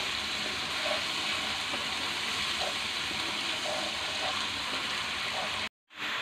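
Onion paste frying in ghee in a kadai, a steady sizzle as it cooks down toward brown. The sound breaks off for a moment just before the end.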